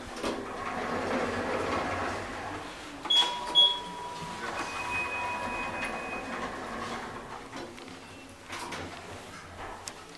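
Thyssenkrupp Evolution machine-room-less traction elevator: its sliding doors run, two short high beeps come about three seconds in, and then a steady thin whine is heard for a few seconds.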